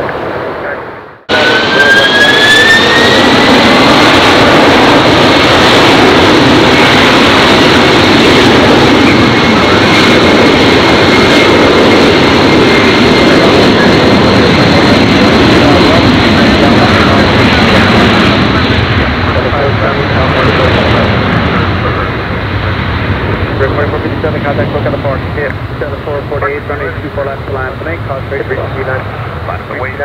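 Jet airliner engines spooling up with a rising whine, then running loud and steady, likely at takeoff power. The sound slowly fades after about 18 seconds.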